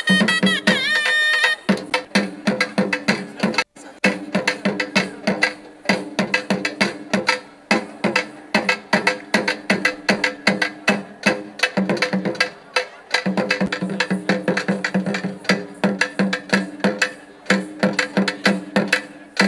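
Tamil folk dance music: fast, steady drumming, about three to four strikes a second, over a held low tone. A wavering melody line sounds over the drums for the first second and a half, then stops.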